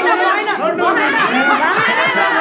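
Crowd chatter: many voices talking at once and overlapping, with no single voice standing out.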